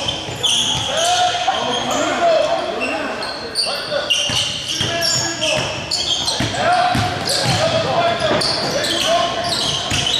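Basketball game sounds in a reverberant gym: a basketball bouncing on the hardwood floor as it is dribbled, short high squeaks of sneakers on the court, and indistinct voices calling out.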